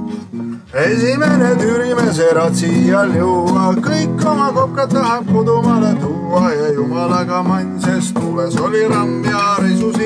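Acoustic guitar strummed in steady chords, with a man singing a sea song in Estonian; the singing comes in about a second in.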